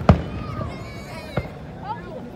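Aerial fireworks shells bursting: a sharp bang right at the start, the loudest, then a smaller one about a second and a half in.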